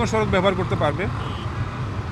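A man speaking over a steady low rumble of road traffic.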